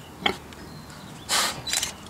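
Domestic pig snuffling at close range: a short grunt, then a sharp, hissy sniff a little over a second in, followed by a smaller snuffle.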